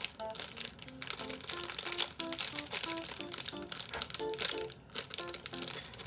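Plastic cookie wrapper crinkling and rustling as a cookie is handled and eaten, over light background music of short, evenly spaced notes.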